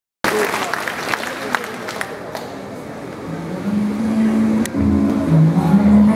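Audience chatter with a few scattered claps in a large hall, then dance music starts about halfway through, its bass line coming in strongly near the end.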